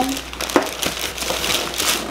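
Plastic shopping bag crinkling and rustling as hands rummage in it and pull an item out, with a sharper click about half a second in.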